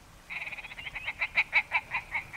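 Ptarmigan calling: a fast, croaking rattle that slows into separate clucks and fades.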